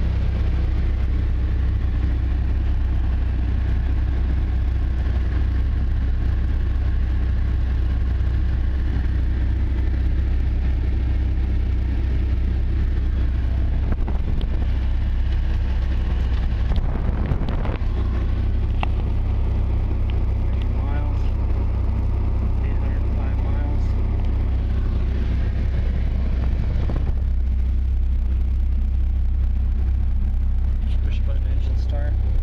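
Dodge Viper SRT10's 8.3-litre V10 idling steadily, heard from inside the cockpit with the door open.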